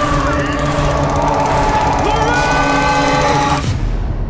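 Loud horror-trailer climax: a shouted "Leave us alone!" and screaming over dissonant music with a fast rattling pulse. It all cuts off abruptly shortly before the end.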